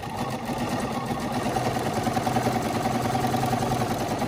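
Bernina 505 QE sewing machine running at a steady fast stitch during free-motion quilting with the BSR stitch regulator foot, an even mechanical whir of the needle going up and down, stopping near the end.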